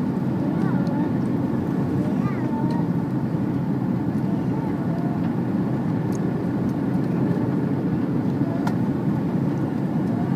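Steady cabin noise inside an Airbus A330-300 on final approach: the engines and the air rushing past the fuselage make an even low rumble.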